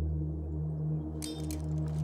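Background music: a low, steady drone of held tones. About a second in, a rapid run of sharp metallic clinks and clashes joins it, like a battle sound effect.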